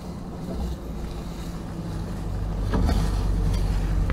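Truck engine and tyre rumble heard from inside the cab while the truck rolls slowly along a grass lane, a steady low drone that grows louder about halfway through.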